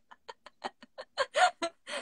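Giggling in short, quick bursts, faint at first and louder after about a second.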